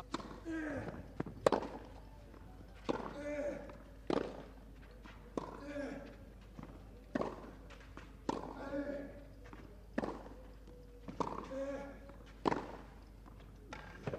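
Tennis rally on a clay court: about ten racket strikes on the ball, one every second or so, each with a player's short grunt just after the hit.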